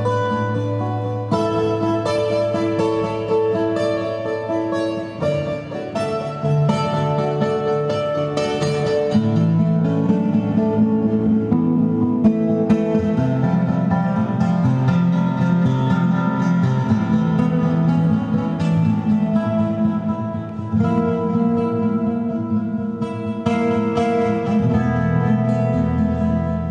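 Acoustic guitar playing a flamenco-style piece: a continuous run of plucked notes over changing bass notes.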